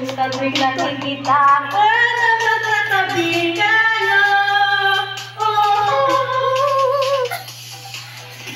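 A pop song with a woman singing long, wavering held notes over the backing music, for a dance challenge; the singing breaks off about seven seconds in.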